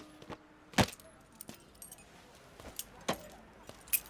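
Keys jingling and sharp clicks as a scooter is handled: one loud click about a second in, then a few lighter clicks, with two more near the end.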